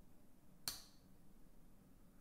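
Near silence, broken once about two-thirds of a second in by a single sharp click: the Spyderco UKPK Salt's slip-joint blade snapping against its backspring.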